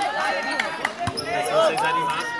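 Voices calling out across a volleyball court, with a few sharp knocks of the volleyball being played.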